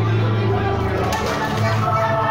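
Children's party song playing loudly, a sung voice over a steady bass note.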